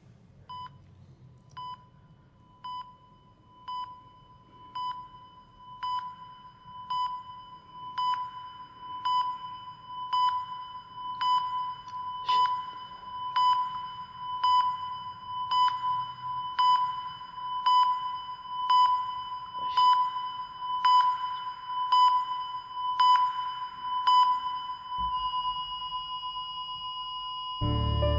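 Patient heart monitor beeping about once a second, the beeps growing louder, then changing near the end into one continuous tone: a flatline, the sign that the patient's heart has stopped.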